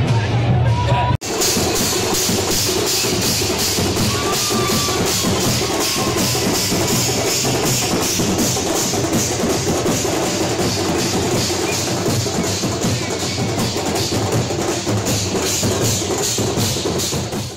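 Street procession drum band playing a fast, steady beat over a noisy crowd. The drumming begins abruptly about a second in, after a brief moment of crowd chatter.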